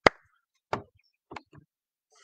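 A few short clicks and knocks from a handheld phone being handled: one sharp click right at the start, then three fainter knocks spread through the rest.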